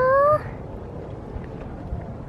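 A person's drawn-out, rising "go-o" that ends about half a second in, followed by steady outdoor background noise.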